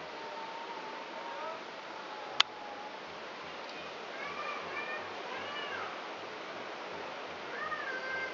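Animal cries: a string of short calls that rise and fall in pitch, heard mostly in the second half, over a steady background hiss, with one sharp click about two and a half seconds in.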